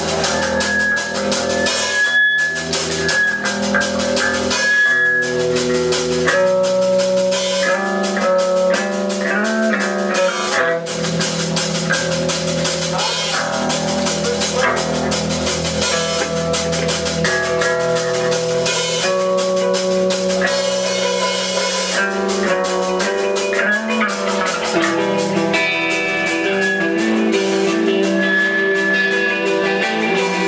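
Live rock band playing: electric guitar through an amplifier over a drum kit, loud and continuous.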